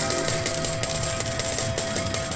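Video slot machine win sound: steady electronic chime tones over a run of rapid clicks, tailing off as the win tally finishes.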